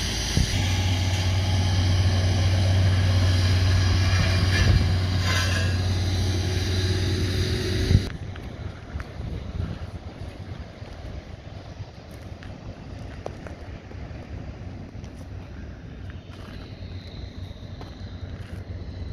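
A tanker truck's diesel engine idling close by: a steady low hum that cuts off abruptly about eight seconds in. Quieter outdoor background noise follows.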